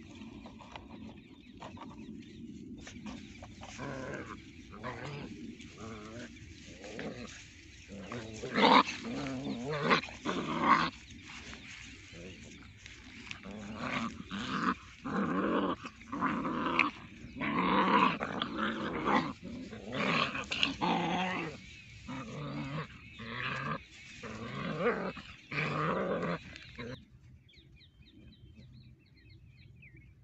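Several puppies growling in short, repeated bursts as they play-fight. The growls stop a few seconds before the end.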